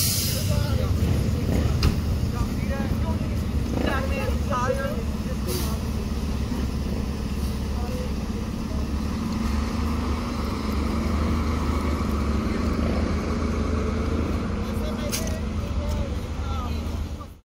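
Fire engine's diesel engine running with a steady low rumble. A tone slowly rises in pitch over several seconds in the second half, with brief voices in the background near the start.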